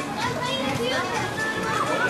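Mixed voices of a crowd of bathers in a swimming pool, with children calling and playing among them and music playing in the background.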